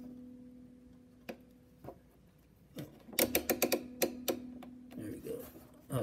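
Paraglider line being pulled under a sewing machine's 3D-printed presser foot to check the foot pressure: a low steady hum in two stretches with a run of light clicks and ticks between three and four and a half seconds in.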